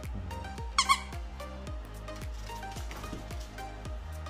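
Two quick high-pitched squeaks from a plush dog toy's squeaker about a second in, over background music with a steady beat.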